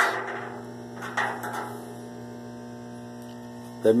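Steady electrical hum made of several level pitched tones, with a brief rustle a little over a second in.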